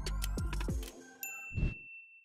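Electronic outro jingle: a quick run of falling swoops over a low bass drone, then a bright bell-like ding a little over a second in that rings on, the notification-bell chime of an animated subscribe button.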